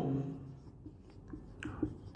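Felt-tip marker writing on a whiteboard: faint short strokes and taps as an arrow and words are drawn.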